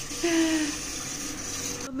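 Water pouring steadily from a brass waterfall-spout tap into a stone basin, a hissing splash that cuts off suddenly near the end.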